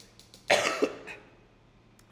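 A man coughs into his fist, two quick coughs about half a second in.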